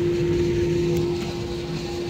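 Airliner cabin noise during taxi: the jet engines' steady idle hum over a low rumble, heard from inside the cabin.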